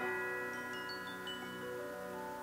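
Background music of sustained chime-like tones, with a quick descending run of high chime notes about a second in.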